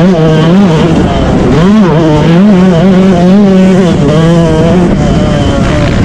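Motocross dirt bike engine revving hard, its pitch rising and falling every half second or so as the throttle opens and shuts over a rough, rutted track. It is very loud and close, picked up by the on-board camera.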